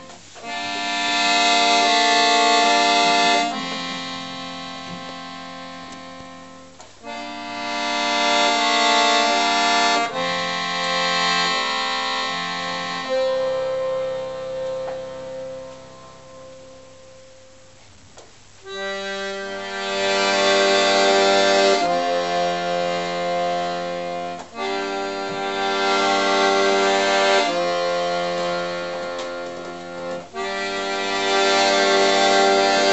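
Accordion playing slow, held chords in phrases that swell and fade. About halfway through it thins to a single quiet held note, then the full chords come back.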